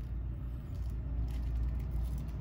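A steady low rumble in the background, with faint handling sounds as hands turn a large toy figure over its box about a second in.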